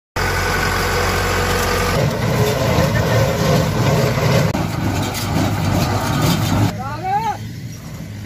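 Farm tractor engine running steadily while raking paddy straw, then a tractor-driven square baler working, the sound changing abruptly at about two seconds and again past four. A voice calls out briefly near the end.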